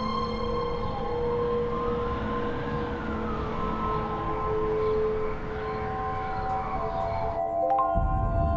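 A siren wailing, rising and falling slowly twice, under soundtrack music with long held tones; the sound changes near the end.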